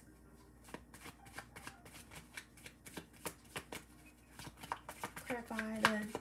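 A tarot deck being shuffled by hand: a quick, irregular run of card clicks and snaps, starting about a second in.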